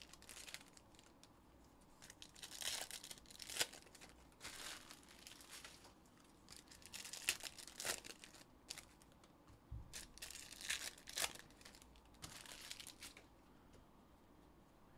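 Foil trading-card pack wrappers being torn open and crinkled by hand, in about five short bursts of crinkling with sharp tearing crackles.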